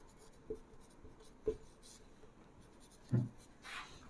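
Marker pen writing on a whiteboard: faint, short strokes and taps, with a short low sound about three seconds in.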